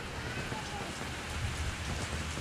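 Steady rain falling on a swimming pool and its tiled patio, an even hiss.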